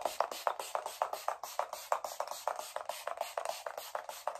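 A finger-pump face mist bottle (Primark PS Harmony hydrating priming spray) pumped quickly over the face, giving a rapid, even run of short hissing sprays, about seven a second.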